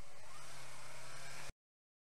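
Yamaha R25 motorcycle riding in slow traffic, heard through a helmet camera as a steady rush of wind and road noise with the engine running underneath. The sound cuts off suddenly about one and a half seconds in.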